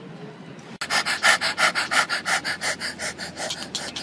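A dog panting rapidly close to the microphone, about six breaths a second, starting about a second in.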